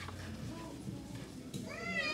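A single meow, rising and then falling in pitch, lasting about half a second near the end.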